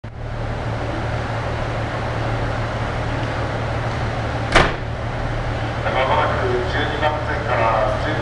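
KiHa 85 series diesel railcar standing with its engines idling, a steady low hum. A single sharp clack sounds about four and a half seconds in.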